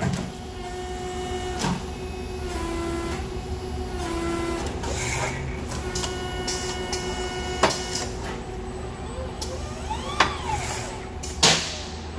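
Automated robotic feeding and forming cell running its cycle: steady motor and servo tones with whines that rise and fall in pitch as the robot arm and slide move. Several sharp clicks and clunks from clamps and grippers are heard, the loudest near the end.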